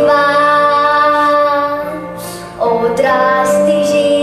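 A child singing a slow song with instrumental accompaniment, holding one long note, then a second long note after a brief break a little past halfway.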